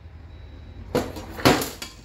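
Metal clatter of a parts washer's perforated sheet-metal basket and hand tools being handled on a workbench: two bursts of clinks and rattles, about a second and a second and a half in.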